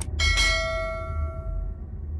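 A click, then one bright bell ding that rings out and fades over about a second and a half: a notification-bell sound effect, over a steady low rumble of background music.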